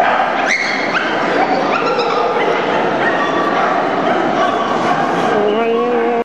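Dogs yipping and barking in short, sharp, rising calls, several in the first two seconds, over a steady background of crowd chatter in a large hall.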